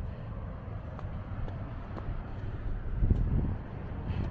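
Wind buffeting the microphone: a low, uneven rumble with a stronger gust about three seconds in.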